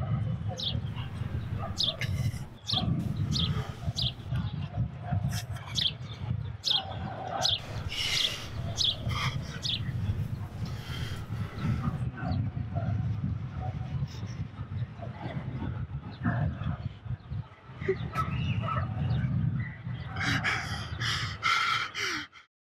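Outdoor park ambience: birds chirping repeatedly over a steady low rumble.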